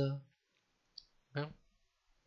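A single short, soft click about a second in, from a computer mouse button advancing the presentation slide, between brief fragments of the lecturer's voice.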